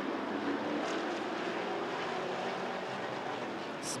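A pack of Sportsman stock cars running at race speed on a short asphalt oval, their engines blending into one steady, even drone.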